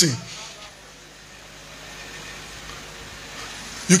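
A pause in a man's amplified speech: a faint, steady room noise with no distinct sound in it. His voice trails off at the start and comes back just before the end.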